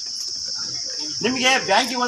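Steady, high-pitched insect chirring, with a man's voice starting up again a little over a second in.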